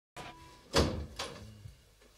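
A door shutting: a loud bang, then a second, softer knock about half a second later and a dull thud.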